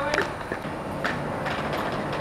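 Inline skate wheels rolling over tiled pavement, with three sharp clicks about half a second apart.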